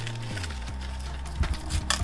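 A kitchen knife cutting through the stalk of a ripe pineapple fruit, giving a few short sharp cracks in the second half, over steady background music.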